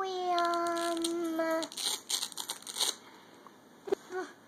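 A young boy's drawn-out hummed 'mmm', a held note falling slightly in pitch for about two seconds. About a second of hissy crackling noise follows.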